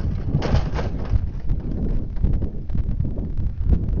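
Wind buffeting the microphone, with a brief noisy clatter about half a second in as a 220-pound test weight, dropped on a plain positioning rope with no shock absorber, is jerked to a hard stop and rattles on its rigging.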